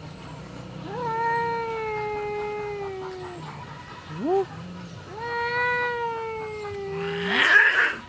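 Cat caterwauling in an angry standoff with another cat: two long, slowly falling yowls with a short rising call between them, then a sudden loud, harsh burst near the end.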